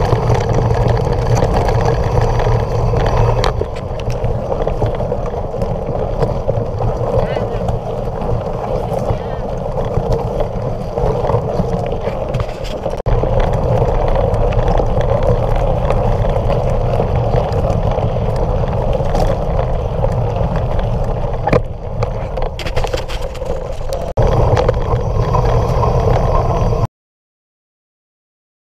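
Muffled, steady rumble of wind and tyres on a gravel and dirt trail, picked up by a mountain bike's action-camera microphone while riding. It cuts off abruptly near the end.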